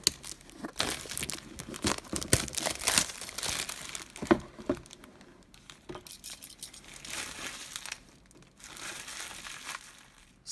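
Clear plastic shrink wrap crinkling and tearing as it is peeled by hand off a cardboard gift box, in irregular crackles with sharp snaps. It is busiest in the first half and turns to quieter rustling later.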